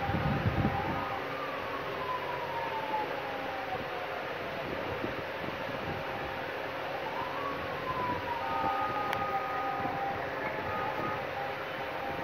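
Steady background noise with a steady hum, over which a siren-like wail twice rises quickly and then slowly falls.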